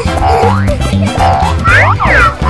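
Upbeat background music with springy cartoon boing sound effects, the loudest boing near the end.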